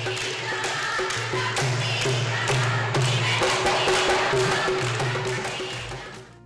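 Music with a steady drum beat over a repeating low bass line.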